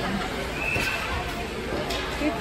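Ice rink ambience during a youth hockey game: skates and sticks scraping on the ice and children's voices. A brief high, steady tone sounds about half a second in.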